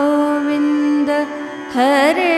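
Devotional mantra chant music with harmonium: one note held steady in pitch for most of the moment, then near the end a woman's singing voice comes in with a wavering, ornamented line.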